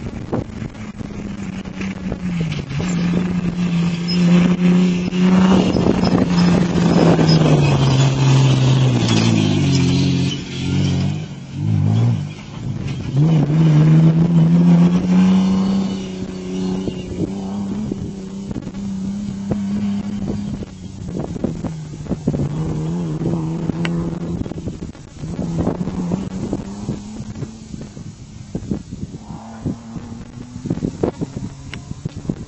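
Rally-raid car engine revving hard, its pitch falling and then climbing again as the driver lifts off briefly and accelerates; in the second half it runs quieter, the revs rising and falling.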